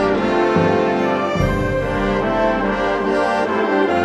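Concert band music with the brass to the fore, playing loud held chords that change every second or so.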